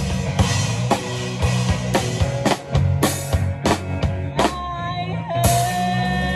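Live band music: drum kit, electric guitar and bass playing, with quick drum hits that stop about four and a half seconds in. After that, held notes ring on, one stepping up in pitch, and a cymbal-like crash comes near the end, leading into a sustained chord.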